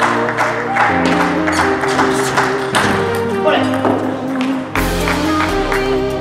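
Background music with a steady beat and sustained chords; a deep bass comes in near the end.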